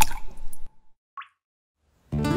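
Water drops falling from the tip of a wooden oar into calm river water: a sharp plop at the start with a brief ringing note, then a smaller drip about a second later.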